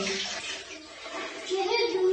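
Bath water splashing and sloshing as a child is scrubbed with a sponge in a bathtub, with a child's voice starting near the end.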